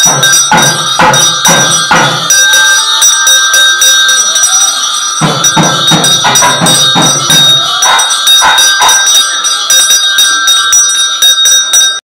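Temple bells ringing without a break during a Hindu abhishekam ritual, with rhythmic percussion strikes about two a second, in a spell near the start and again from about five to eight seconds in.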